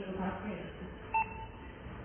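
Video intercom indoor monitor giving one short electronic beep about a second in as its touch button is pressed: a key-press confirmation tone.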